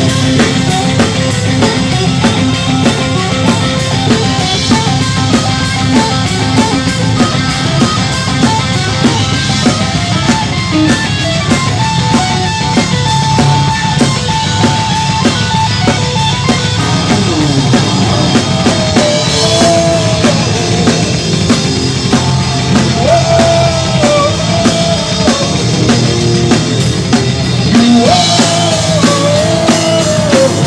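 Live heavy metal band playing an instrumental passage: distorted electric guitars, bass and drum kit. A lead guitar holds one long note about halfway in, then plays bending, wavering lines through the second half.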